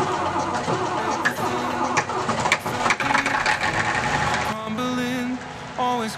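Vistula KZB-3B combine harvester's engine running, mixed under background music. About four and a half seconds in, the music's melody comes to the front and takes over.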